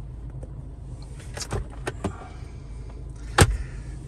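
MINI Cooper S 2.0-litre petrol engine idling, heard inside the cabin as a steady low hum. A few light clicks come about a second and a half in, then one sharp knock near the end.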